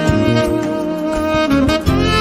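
Smooth jazz instrumental with a saxophone lead holding a long note over a bass line.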